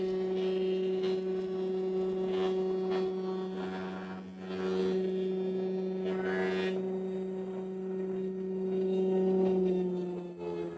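Thickness planer running with a steady electric hum while a narrow strip of wood is fed through it; the hum wavers briefly about four seconds in.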